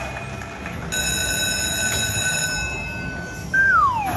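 Jackpot Carnival Buffalo slot machine's electronic sound effects during its bonus feature: a held, whistle-like tone begins about a second in and lasts about two and a half seconds, then a loud falling glide in pitch comes near the end.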